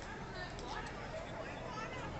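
Indistinct voices talking, over a steady low hum.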